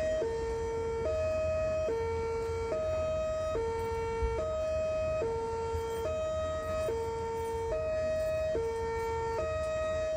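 Miniature bosai musen (Japanese-style public-warning horn loudspeaker) sounding a hi-lo siren tone: a high and a low electronic tone alternate steadily, each held just under a second.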